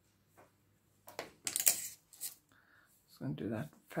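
A woman speaking a few words near the end, after short rustling noises about a second in.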